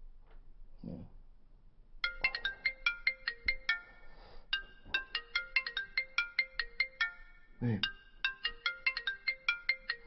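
Mobile phone ringtone signalling an incoming call: a fast, repeating melody of short, bright notes that starts about two seconds in, with a brief break partway through.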